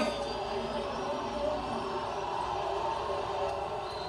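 Steady murmur of stadium crowd and broadcast sound coming from a television, with no clear words and a faint steady high whine underneath.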